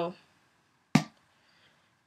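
A single sharp knock about a second in that dies away quickly.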